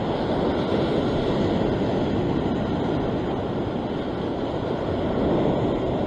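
Ocean surf surging and washing over a rock ledge, a steady rush of water.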